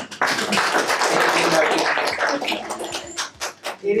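Audience applauding. The clapping thins out and stops about three and a half seconds in.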